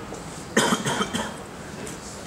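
A person coughing two or three times in quick succession, about half a second in.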